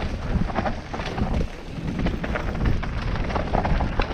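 Mountain bike tyres rolling and skidding on loose, dusty dirt, with constant rattling knocks from the bike over the rough ground and a heavy wind rumble on the microphone.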